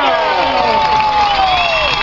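High school football crowd cheering and yelling at a touchdown, many voices overlapping, with one long drawn-out shout sliding steadily down in pitch until near the end.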